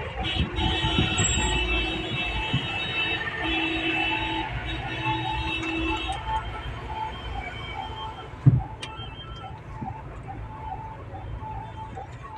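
Road traffic in a jam: engine and road rumble with long horn blasts through the first six seconds and a short electronic beep repeating about twice a second. A single thump about eight and a half seconds in.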